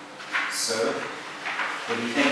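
Sheets of paper rustling as pages are handled and turned, with two short low voice sounds from a man.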